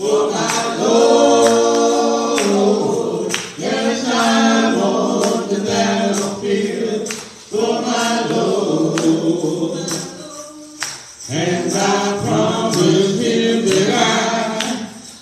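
Gospel singing by a church congregation and a man at the pulpit microphone, with long held notes and short breaks between phrases, over a steady beat of sharp percussive strokes.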